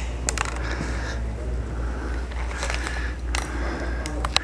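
Handling noise from a handheld camera: a few sharp clicks and rubs over a steady low hum.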